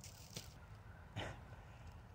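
A cat chewing on a cardboard box: mostly quiet, with a faint click and one short crunch a little over a second in.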